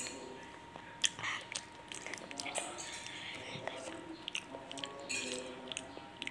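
A child chewing a fried snack close to the microphone, with many short, sharp mouth clicks as he bites and chews.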